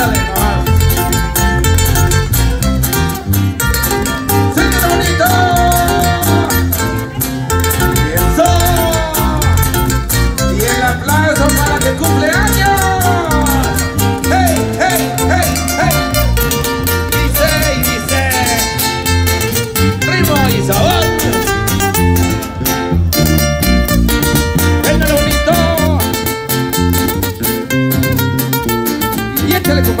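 A live tierra caliente band playing dance music loud and without a break: guitars and a violin melody over a steady bass beat.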